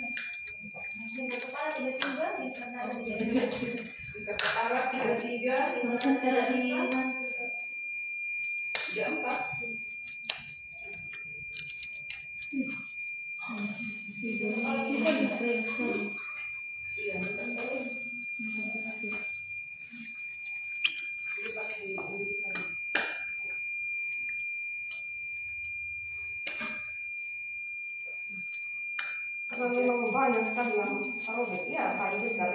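A steady high-pitched electronic tone runs without a break, under low voices and a few sharp clicks.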